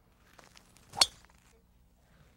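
Golf driver striking a ball off the tee: one sharp click about a second in.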